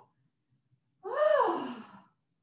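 A woman's long voiced sigh or gasp without words, lasting about a second. It starts about a second in, and its pitch rises and then falls away.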